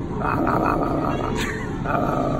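A loud, rough, animal-like growling roar that starts abruptly, with a brief higher rasp partway through.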